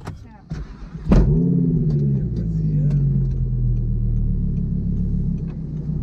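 Audi R8 engine starting about a second in: it fires suddenly, flares up in revs, then settles to a steady idle.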